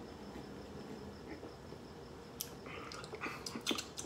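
Quiet room tone with faint drinking sounds, then a few light clicks in the second half as beer glasses are set down on the table.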